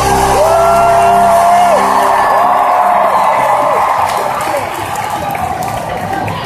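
Arena crowd cheering and whooping as the live band's music dies away, with two long held notes, each about a second and a half, rising above the crowd noise.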